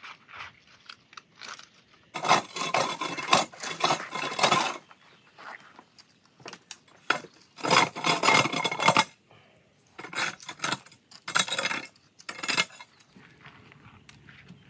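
Metal garden tools scraping over concrete and gravel while weeds are cleared, in several rough bursts of a second or more with pauses between.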